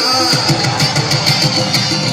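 Live Pashto music played loud through a hall's sound system, with plucked strings over a fast, steady beat.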